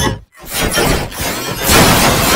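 Heavily processed edit sound effect. After a brief gap, a dense crashing noise with no clear pitch builds louder toward the end.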